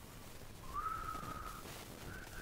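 A person whistling softly: one thin note that slides up and then holds steady for about a second.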